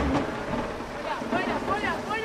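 Faint, distant voices of people on a football pitch over an outdoor hiss, with some low wind rumble on the microphone.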